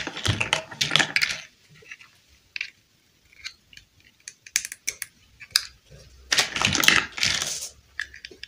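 Small hard-plastic toy dollhouse furniture pieces clicking and clattering against each other and against the plastic house as they are handled. Two busy spells of clatter, near the start and about two-thirds of the way through, with scattered single clicks between.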